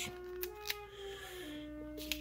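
Faint trumpet played by a beginner: three held notes in turn, the second a little higher and the last one lower.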